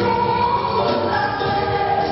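Live band music: a woman singing lead into a microphone over electric guitars, bass and keyboards, holding long notes.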